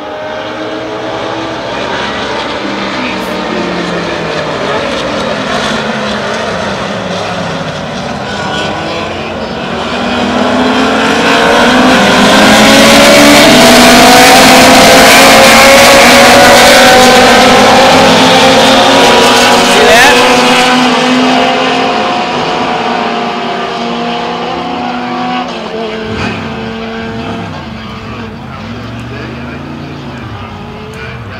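Several race car engines revving and shifting on a road circuit, their pitches rising and falling over one another; the sound builds to its loudest in the middle as the pack passes, then fades away toward the end.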